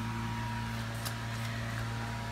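Steady low hum with a faint, constant higher tone over even background noise: indoor room tone from a running fan or appliance.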